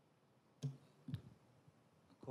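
Two brief clicks about half a second apart over faint room tone.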